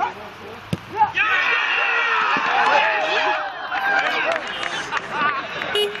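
A soccer ball struck once in a penalty kick, then, about a second later, a sudden burst of loud shouting and cheering from many voices: the deciding penalty of the shootout going in. The cheering is loudest for a couple of seconds, then breaks up into scattered shouts.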